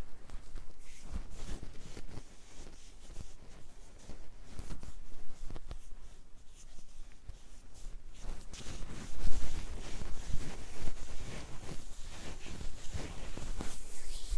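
Hands rubbing and kneading over a cotton T-shirt during a seated chair massage: irregular fabric rustling with small soft knocks, louder for a few seconds past the middle.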